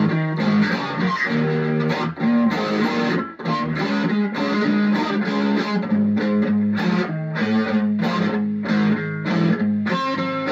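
Electric guitar played over recorded band music, with steady bass notes underneath.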